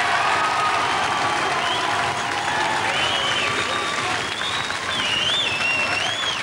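Studio audience applauding steadily, with high-pitched cheers and whoops rising and falling over the clapping, more of them in the second half.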